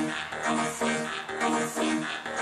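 Live band playing an electronic dance instrumental passage, with a pulsing synth chord and beat repeating about three times a second and no singing.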